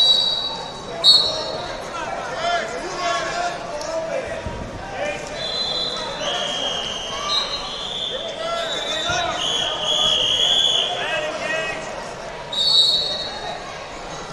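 Referee whistles blowing again and again at several different pitches, short blasts at the start and about a second in and longer ones of a second or two in the middle, over the steady chatter of a crowded, echoing hall.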